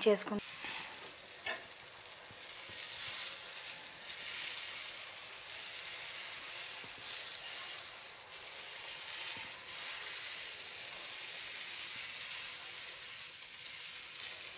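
Vegetable omelette batter sizzling steadily in oil on a hot non-stick pan while it is spread out with a steel ladle, with a single click about a second and a half in.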